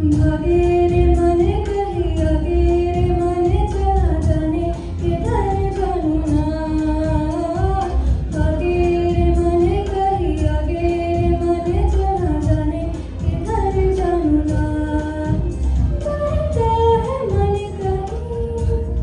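Female voices, girls among them, singing a Bollywood song into microphones through a PA: one melody line of long held notes that slide up and down between phrases.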